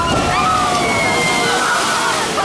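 A loaded water-ride boat running down its chute into the splash pool: a steady loud rush and splash of water.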